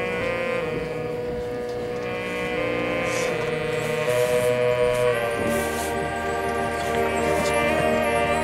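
Marching band of brass, woodwinds and percussion playing held chords. The chord changes about five seconds in, with deeper bass coming in.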